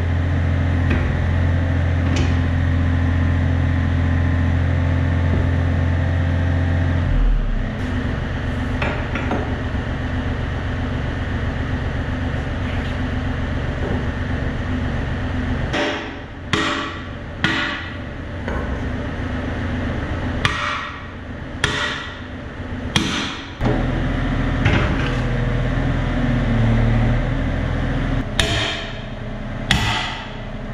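A mini excavator's engine runs steadily, its note changing about seven seconds in. From about halfway, a sledgehammer strikes steel on the excavator bucket and quick-change coupler: about eight sharp blows in irregular groups.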